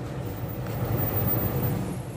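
Street traffic noise: a passing vehicle's engine and tyre noise swells a little around the middle and then eases off.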